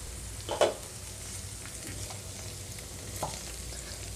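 Sliced ivy gourd (tindora) frying in oil in a nonstick pan: a steady, soft sizzle. A wooden spatula starts stirring near the end, with a brief scrape or two in the pan.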